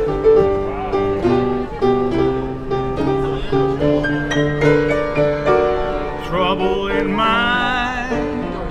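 Upright street piano played in a blues style, struck notes and chords following one another steadily. Near the end a voice comes in with a wavering pitch over the playing.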